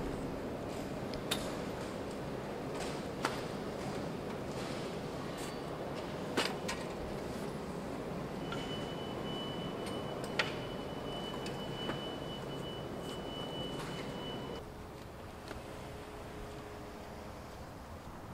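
Exhibition hall ambience during booth assembly: steady room noise with a few scattered sharp knocks and clicks, and a thin high whine held for several seconds in the middle. About three-quarters through the background drops quieter and changes.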